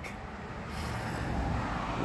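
Steady noise of a vehicle on a road, growing slowly louder.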